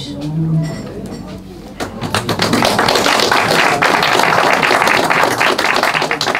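Audience applauding, starting about two seconds in after a few last spoken words and going on steadily.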